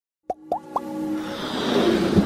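Animated logo intro sting: three quick pops, each sweeping up in pitch, within the first second, then a swelling whoosh with held musical tones that grows steadily louder.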